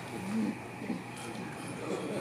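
A brief low voice sound about half a second in, over the quiet background of a large hall.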